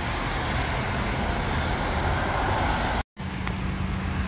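Steady hiss of falling rain with a low rumble underneath. It drops to dead silence for a moment about three seconds in, at a cut, then resumes.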